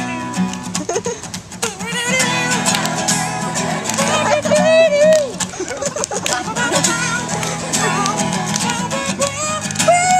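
Acoustic guitar strummed steadily, with a man singing a melody over it in a live, unamplified performance.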